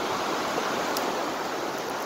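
Fast-flowing river running over rapids: a steady rush of white water.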